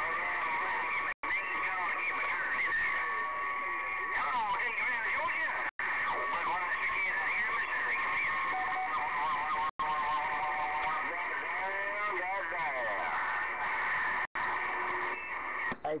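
CB radio receiver on a sideband channel in rough conditions: steady band noise with garbled, warbling voices and whistling tones from other stations, briefly cutting out four times.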